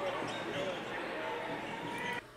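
Faint basketball game sound in a gym: a ball bouncing and indistinct voices in the hall, steady and low throughout.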